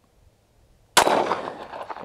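A single 9mm pistol shot from a Glock 19 Gen 3, about a second in, its report trailing off over the next second.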